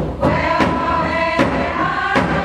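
A group of voices singing a chant together in held notes, over a steady drumbeat about once a second.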